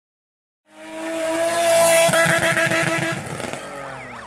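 Racing-car engine sound effect for a channel's logo intro. After a moment of silence it fades in, holds a steady high rev with a rapid pulsing underneath, then fades out with a few quick rising-and-falling chirps near the end.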